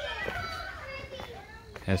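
Children yelling as they play, several high voices overlapping.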